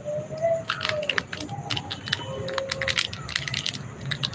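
Handling noise close to the microphone: a quick, irregular run of small clicks and light taps as hands work a small object.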